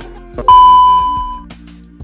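A loud electronic beep: one steady high tone that starts abruptly about half a second in and fades away over about a second, over soft background music.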